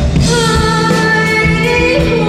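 A woman singing into a microphone with a live band of piano, electric guitar and drums; her voice comes in just after the start, holding long notes over the accompaniment.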